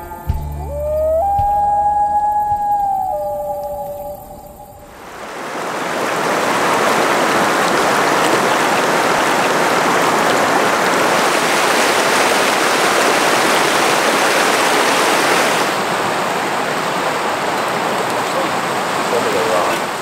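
The last held notes of an intro tune fade out over the first few seconds. Then a river rushes steadily over rocks in shallow rapids.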